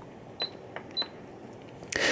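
Two short high-pitched beeps about half a second apart, each with a light click, from the push-button control panel of a Signstek ultrasonic mist diffuser as its buttons are pressed to switch it on.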